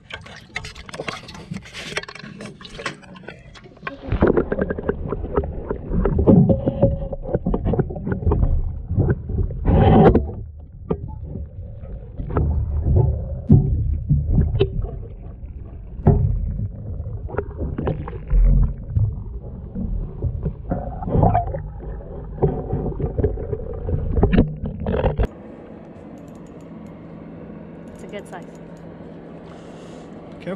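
Muffled water sloshing and knocking against a camera held under water among live panfish, heavy and uneven for about twenty seconds. It stops abruptly about 25 seconds in, leaving a low steady hum.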